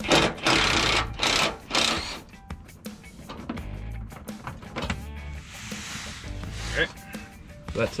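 Cordless driver spinning out the 8 mm screws of the pan under the truck, in about three short bursts in the first two seconds. Background music plays underneath.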